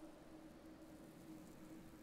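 Near silence: faint steady hiss with a low, steady hum.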